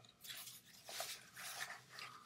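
Black fabric tool case being handled and opened, giving a few soft rustling and scraping sounds.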